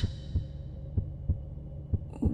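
Heartbeat sound effect: a steady heartbeat of low, evenly recurring thumps over a faint low hum.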